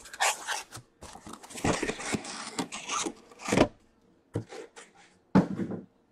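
Cardboard case flaps opened and boxed card packs slid out against the cardboard, rubbing and scraping, then hobby boxes set down on the table with two knocks near the end, the second the loudest.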